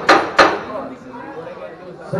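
Boxing ring bell struck twice in quick succession near the start, each stroke fading quickly, signalling the start of a round.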